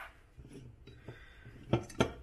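Soft handling of an unopened aluminium soda can on a stone countertop, with a short sharp knock near the end as a hand takes hold of the can.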